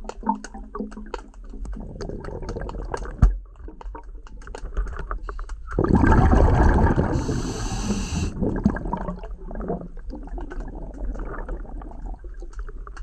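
Underwater sound of a spearfisher moving through lake water: a low rumble with scattered small clicks and a sharp knock about three seconds in, then a loud rushing, bubbling burst lasting about two seconds from about six seconds in.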